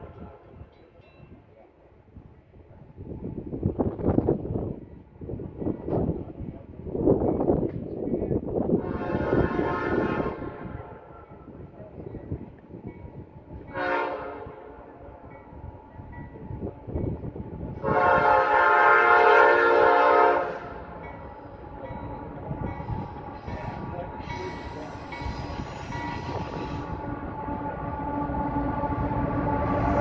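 Norfolk Southern diesel freight locomotive's air horn sounding the grade-crossing pattern as the train approaches: a long blast, a short one, then a final long blast, the loudest. After it the rumble of the approaching locomotives swells steadily.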